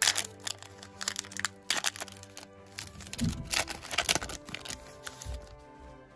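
Plastic-foil wrapper of a Panini Donruss Optic football card pack being torn open and crinkled in the hands, a run of sharp crackles, over steady background music.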